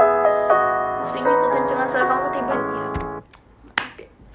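Piano backing track playing sustained chords, then stopping abruptly about three seconds in. A sharp click follows near the end. The accompaniment is loud against the singer's voice, which she herself calls too loud for her voice.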